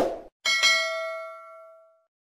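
A subscribe-button sound effect: quick clicks, then about half a second in a single bell ding that rings out and fades away over about a second and a half.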